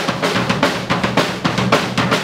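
Live band playing loud, fast music on drum kit and electric guitar, the drums keeping an even beat of about four strikes a second over the guitar.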